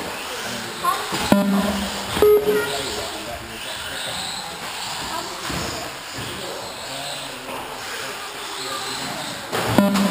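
Brushless electric 1/18-scale RC cars racing on an indoor track, their motors whining up and down. Sharp knocks come about a second in, again a second later and near the end. People talk in the background.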